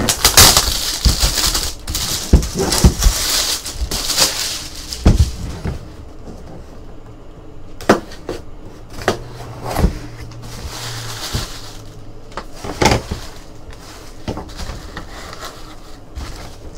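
Cardboard jersey boxes being handled and one opened: a few seconds of loud rustling and scraping with sharp clicks, then quieter handling broken by a few sharp knocks as a folded jersey is drawn out.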